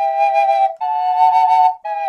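Brazilian rosewood double Native American flute in mid B, both pipes sounding at once in two-note harmony: one note, then a slightly higher one held about a second, a brief break, and a new note starting near the end. This is the sweeter interval made by half-covering the third hole, or by covering the hole below it with the pinky.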